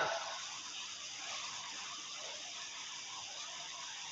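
Faint steady hiss of room tone and recording noise during a pause in speech.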